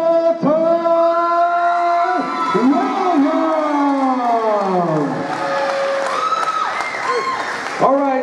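A man's shouted, drawn-out call, held on one pitch for about two seconds and then sliding slowly down: a ring announcer stretching out the winner's name. Crowd cheering and applause rise near the end.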